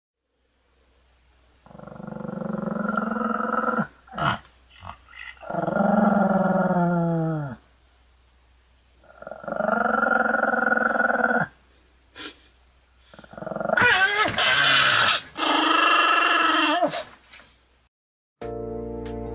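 A Pomeranian growling in five long, drawn-out growls of about two seconds each, with a few short sounds between them.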